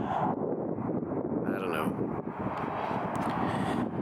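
Wind buffeting the camera microphone in a low, uneven rumble, with a brief murmur of voice about one and a half seconds in.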